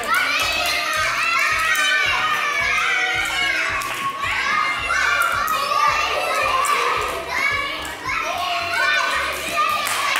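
Many young children's voices chattering and calling out at once, high-pitched and overlapping, with the echo of a large hall.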